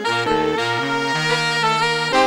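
Jazz horn ensemble with saxophone and brass, playing several notes together in chords that move every fraction of a second.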